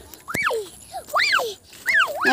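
A dog whining: repeated high-pitched whimpers, each rising and then falling in pitch, about one a second.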